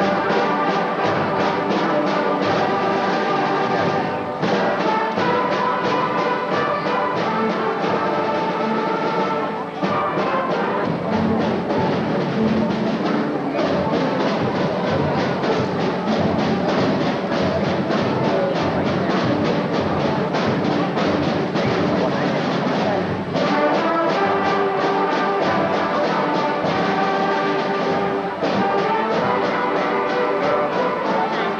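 A children's school orchestra playing live, with brass prominent over a steady beat.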